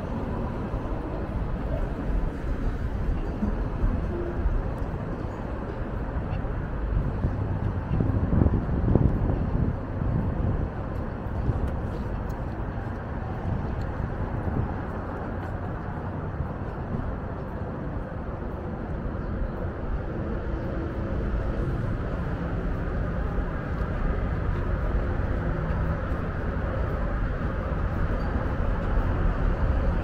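City street traffic: a steady low rumble of passing vehicles, swelling louder about eight to ten seconds in.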